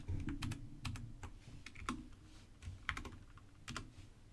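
Computer keyboard keys pressed in short, irregular runs of clicks, the keystrokes of editing a command line and entering it.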